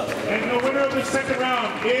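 Voices talking, several people at once, the speech overlapping without pause.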